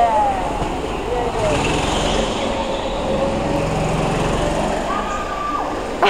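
Go-kart's small engine running through a corner, its tyres squealing in several drawn-out tones on the concrete floor, with a higher squeal near the end.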